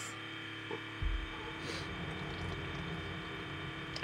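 Keurig single-serve coffee maker brewing a cup of hot water, with a steady electric hum. About a second in, its pump starts and adds a low rumble.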